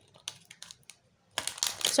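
A deck of cards being shuffled by hand: a few light, separate clicks of card edges, then a quicker, louder run of cards slapping together about one and a half seconds in.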